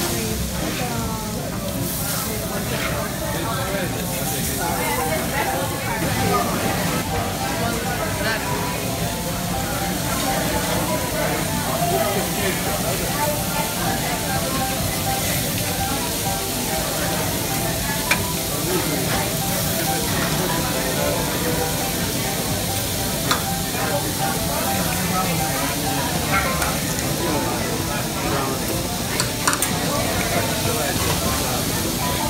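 Steak, shrimp and vegetables sizzling on a hot teppanyaki flat-top griddle, a steady frying hiss under restaurant chatter, with a few sharp clicks in the second half.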